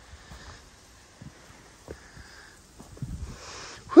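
A hiker breathing and sniffing the air while climbing, quietly, with a short sniff just before the end, and faint footsteps on rock steps.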